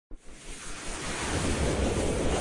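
Intro sound effect: a wind-like whoosh of noise that swells steadily louder, with a low rumble underneath.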